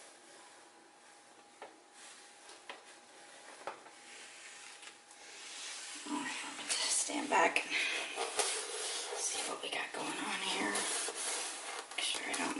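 A few faint soft taps, about a second apart, as a balloon is dabbed onto wet acrylic paint over a low steady hum. From about halfway through, a woman talks quietly.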